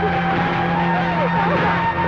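Dramatic film background score holding sustained notes, with a woman's distressed cries sliding up and down in pitch over it.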